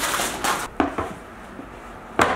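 Dishes and a wooden serving board being handled on a table: a brief rustle, then two light knocks about a second in.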